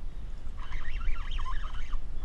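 Seabirds calling over open water: a run of rapid, warbling calls that slide up and down in pitch, starting about half a second in. Under them is a steady low rumble of wind on the microphone.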